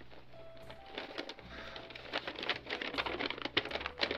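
Soft background music with sustained low notes and a few held higher tones. Over it, paper rustles and crackles irregularly as a letter is unfolded and handled.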